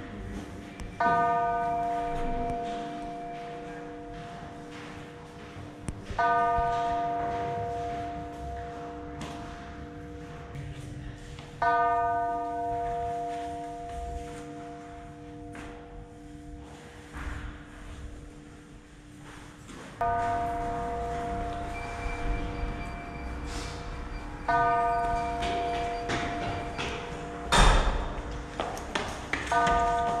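Slow bell-like chimes, struck roughly every five seconds, each ringing out and fading over several seconds. A single loud thump comes about two seconds before the end.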